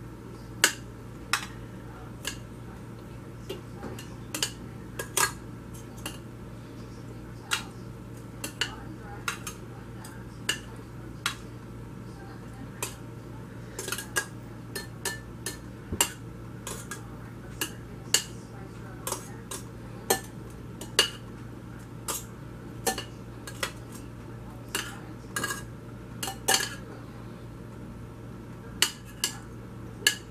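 Metal tongs clinking against a frying pan and a glass baking dish as browned meatballs are picked up and set down: irregular sharp clinks, one or two a second, over a steady low hum.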